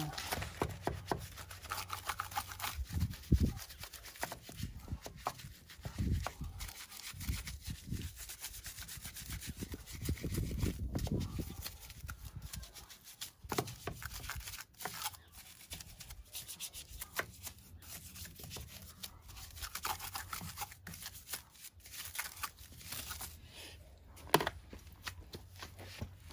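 Vikan wheel brush scrubbing the foam-coated face of an alloy wheel, a quick irregular run of bristles rubbing over the spokes and rim. A single sharp knock sounds near the end.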